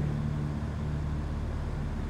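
Steady low hum of room tone, with no other sound.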